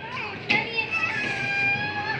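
A young child's high-pitched voice: a short squeal, then one long held note lasting about a second, with a sharp knock about half a second in.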